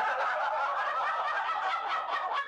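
A group of people laughing together, starting suddenly and holding steady.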